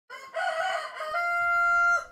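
A rooster crowing: a wavering opening, then a long held final note from about a second in that cuts off abruptly.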